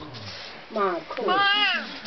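A high-pitched wailing vocal cry: a short falling call, then a longer call that rises and falls.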